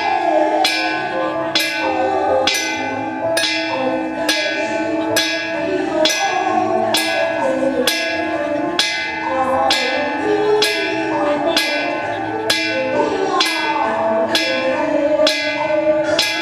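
Taoist priests chanting together, over a small metal ritual gong or bell struck steadily about once a second, each stroke ringing on.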